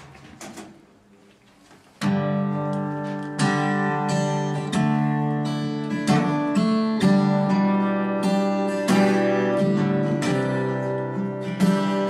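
Acoustic guitar playing a song intro. After a quiet couple of seconds with a few faint clicks, strummed chords start suddenly and carry on in a steady strumming rhythm, with no singing yet.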